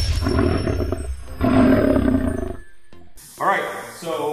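A low monster roar sound effect, lasting about two and a half seconds and then cutting off. A man's voice starts near the end.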